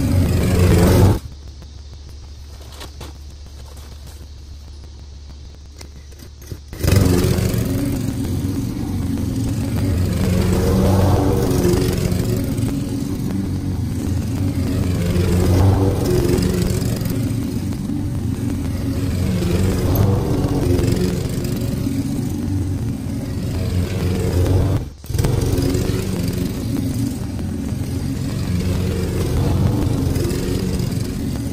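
Gasoline walk-behind lawn mower running while cutting grass, its small engine rising and falling in loudness as the mower is pushed toward and away. The sound drops away for about five seconds a second in, then comes back loud and runs on.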